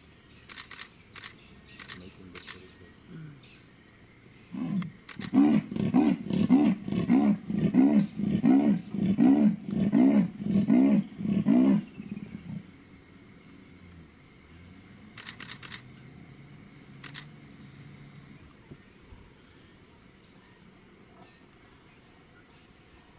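A female leopard gives her sawing call, the leopard's roar: about a dozen rasping grunts, evenly spaced a little over half a second apart, starting about four seconds in and lasting some seven seconds. It is a call to a male.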